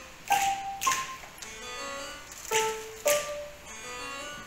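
Digital keyboard played as a piano: a slow melody of ringing notes, struck in two pairs, each strike with a sharp, hissy accent.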